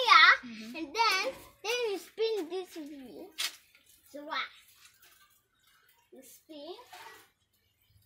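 A young girl talking in a high voice, her words unclear. She speaks loudest at the start and falls quiet for a moment past the middle before speaking briefly again.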